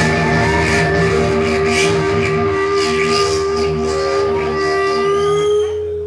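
Live band's amplified music heard from within the crowd: one long held note rings over a low drone, with a higher tone rising near the end as the sound begins to fade.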